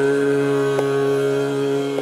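Hindustani classical khayal singing in raga Shudh Kalyan at slow vilambit tempo: a male voice holds one long steady note over a tanpura drone. A single light stroke sounds just under a second in.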